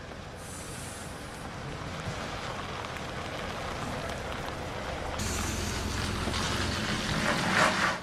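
Diesel road train (Cat prime mover pulling two trailers) running, a steady rumble of engine and tyres that grows louder over the last few seconds.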